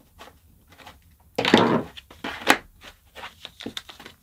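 Handling sounds from a screwdriver and a leather sheath: faint clicks as a Chicago screw is tightened through the leather strap, then a short rustling scrape about one and a half seconds in and a sharp tap about a second later, followed by small ticks.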